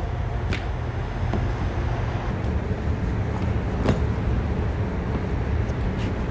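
Steady low background rumble, with a few sharp clicks from wire and flexible conduit being handled, one about half a second in and a louder one near four seconds.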